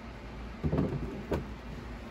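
Yellow plastic lid of a resin wash-and-cure station lowered over the base and set in place: a short scrape about two-thirds of a second in, then a single knock as it seats.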